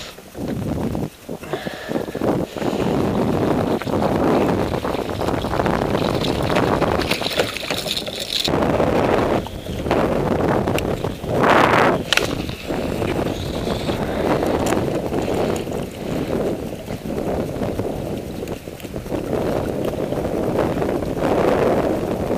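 Wind buffeting an open-air camera microphone: a loud, uneven rumble that rises and falls in gusts.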